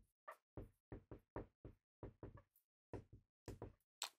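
A felt-tip marker tapping and stroking on a whiteboard as a word is written: a quick, uneven run of short, faint taps, about three or four a second.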